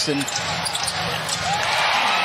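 Arena crowd noise during live basketball play, with a few sneaker squeaks on the hardwood court in the second half.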